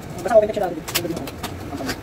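Short wordless vocal murmurs, with two sharp cardboard crackles about a second apart as a taped cardboard box is pulled open.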